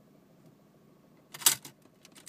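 Near-quiet hum for over a second, then a quick cluster of sharp clicks and rustles about a second and a half in, from a hand handling controls in a car's dashboard.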